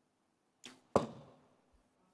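A compound bow shot: a sharp snap of the release, then about a third of a second later a louder, sharper crack that rings briefly and fades.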